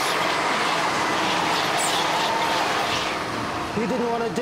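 A bus running, with steady engine and road noise and a faint wavering whine. A voice begins just before the end.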